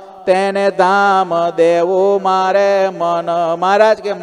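A man chanting a Gujarati devotional verse to a slow melody, solo, in long held notes. The phrases begin just after a short pause at the start.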